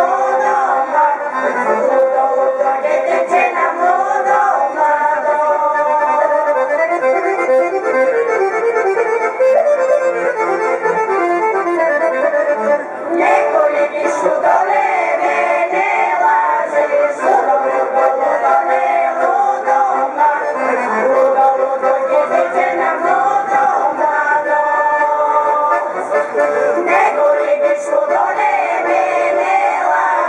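Piano accordion playing a Bulgarian folk melody, with two short breaks between phrases.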